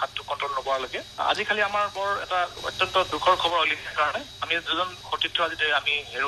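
Continuous speech in Assamese from a radio news report, the voice sounding narrow, as over a telephone line.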